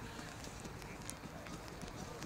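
Faint hoofbeats of racehorses walking on a hard paved path, a few irregular clops over a steady outdoor hiss.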